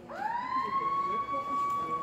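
Diesel-electric locomotive's horn sounding one long blast, its pitch sliding up just after it starts and then holding steady.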